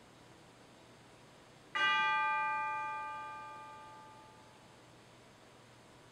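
A bell-like chime struck once, a little under two seconds in, its ringing tone fading away over about three seconds.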